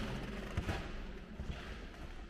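Footsteps on a wooden parquet floor: a few soft thumps over faint room noise.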